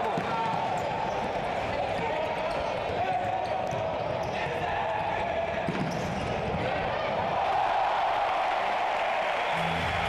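Live sound of an indoor futsal match: the ball knocking and bouncing on the hard court over a steady crowd noise echoing in the hall. The crowd gets louder in the last couple of seconds as a goal goes in.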